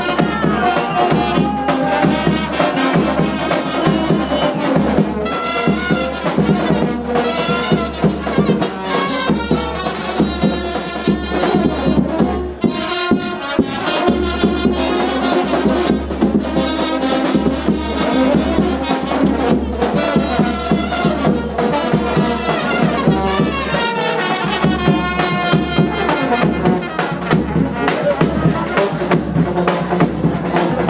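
Brass band music, trumpets and trombones over a drum and a heavy, steady bass line, playing loudly without a break.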